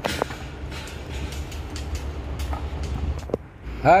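Steady low rumble of wind on the microphone, with scattered light crunches and clicks of footsteps on crushed stone.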